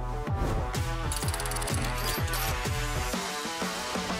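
Electronic music with a steady kick-drum beat, about three beats a second, under sustained synth tones; the bass beat drops out briefly about three seconds in.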